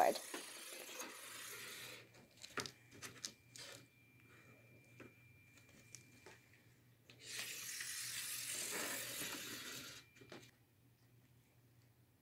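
Marker drawn along a ruler across corrugated cardboard. A faint scratchy stroke comes in the first two seconds and a longer one of about three seconds in the second half, with a few light taps and clicks of the ruler and cardboard in between.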